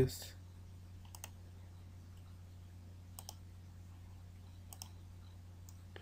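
A few faint computer keyboard and mouse clicks, in pairs about two seconds apart, over a steady low hum.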